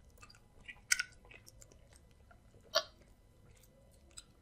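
Close-miked chewing of a handful of amala and stew, a soft wet mouth sound with many small clicks. Two much louder sharp, wet smacks come about a second in and again near three seconds.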